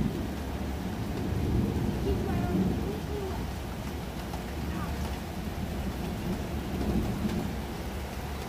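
Steady rain falling, with a low continuous rumble underneath.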